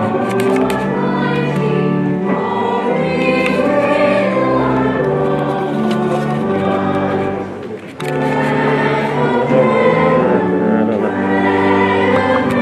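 Choir singing a hymn in long held notes, with a short break between phrases about eight seconds in.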